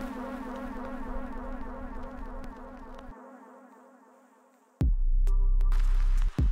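Electronic music: a buzzing synthesized drone with a fast warbling texture fades away over about four seconds, then a loud, bass-heavy synth chord cuts in abruptly near the end.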